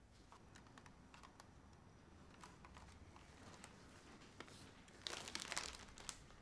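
Faint scattered clicks and handling in a quiet room, then a plastic snack bag crinkling in a hand for about a second near the end.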